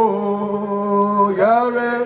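A man singing solo, holding one long note for more than a second, then sliding up into the next held note.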